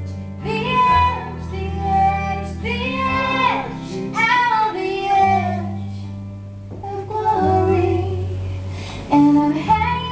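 A woman singing live over a strummed acoustic guitar, her voice sliding between held notes above sustained low guitar bass notes.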